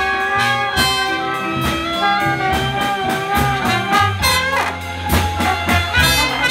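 Live jazz band playing: trumpet, trombone and clarinet sounding together in held and moving lines over upright bass, piano and drums.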